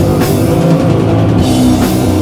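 Live doom metal band playing: distorted electric guitars and bass holding slow, heavy chords over a drum kit, with cymbal hits shortly after the start and near the end.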